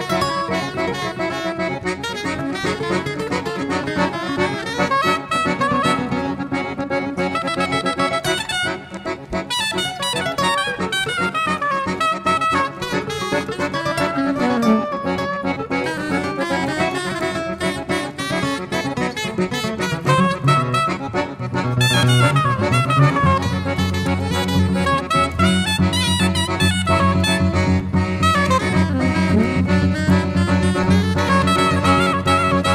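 A jazz trio of soprano saxophone, Cavagnolo button accordion and acoustic guitar playing a tango, full of fast melodic runs. About two-thirds of the way through, a louder sustained low chord comes in underneath.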